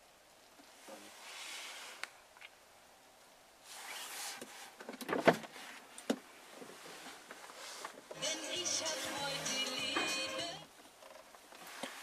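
Clicks and a short electric-motor whir in a car cabin, the motorised dashboard air vents deploying, followed by a couple of seconds of music about eight seconds in.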